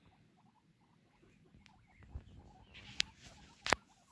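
Guinea pigs making soft, short squeaks and chirps. Near the end come two sharp clicks, the second the loudest, with a short rustle just before the first.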